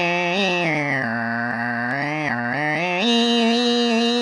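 A man's voice imitating bagpipes: one unbroken droning tone whose pitch steps up and down like a pipe tune, stepping up about three seconds in.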